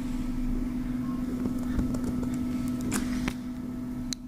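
A steady low machine hum, with a few faint clicks in between.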